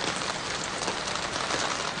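Steady rain falling on wet pavement: an even hiss dotted with many small drop ticks.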